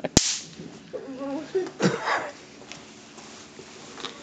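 A throw-down bang snap cracking sharply as it hits the concrete just after the start, followed by a shorter, softer pop around two seconds in.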